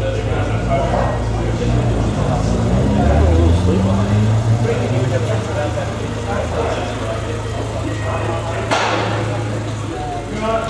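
Subaru Outback's boxer engine running at idle, with a brief rise in engine pitch about three to four seconds in. A sharp click comes near the end.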